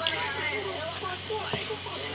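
Speech: a person talking, with no other clear sound.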